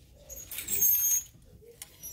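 Plastic clothes hangers sliding and clicking along a clothing rack rail as garments are pushed aside by hand, loudest for about a second near the middle.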